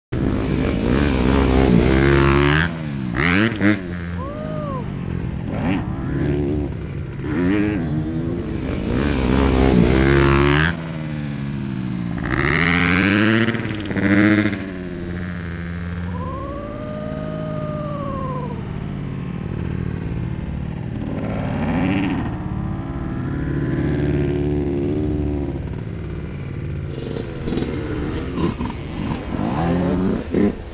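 Motocross dirt bike engines revving over and over, their pitch climbing and dropping as the riders accelerate and back off around the jumps. The bikes are loudest in the first ten seconds, then carry on a little quieter.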